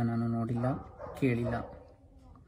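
A man's voice speaking in short phrases, then falling quiet near the end.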